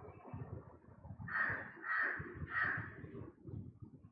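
A bird cawing three times in quick succession, harsh calls about 0.6 s apart, over faint low knocking and rumble.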